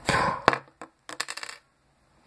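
Small plastic toy figures and accessories being handled and set down on a hard plastic surface: a short rustling burst, a sharp click, then a quick run of light clicks like a small plastic piece dropping and bouncing, stopping about a second and a half in.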